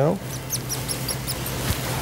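Rapid, high-pitched chirping, about seven chirps a second, from the cath lab's X-ray system during live fluoroscopy while a catheter is steered into the right coronary artery; it stops about a second in, over a low hum.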